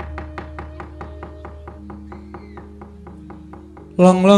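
Javanese gamelan music accompanying a wayang kulit shadow-puppet play. A quick, even run of struck notes, about six a second, sounds over softer held tones that drop lower about halfway through.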